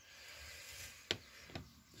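Faint handling noise from fingers on a plastic miniature: a soft rustle, then a sharp tick about a second in and a fainter one shortly after.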